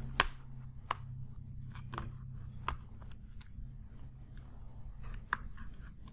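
Scattered light clicks and taps as a plastic tablet is handled and shifted on a silicone work mat, the sharpest just after the start, over a steady low hum.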